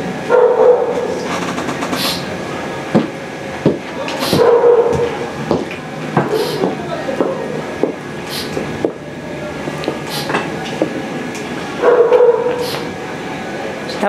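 Repeated drawn-out cries and calls from a party next door, coming in through an open window. There are three long calls, about half a second in, midway and near the end, with shorter calls and a few sharp knocks between them.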